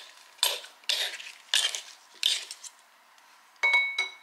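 Kitchen utensils working against dishes: a run of short scraping strokes roughly every half second, then a single ringing clink near the end.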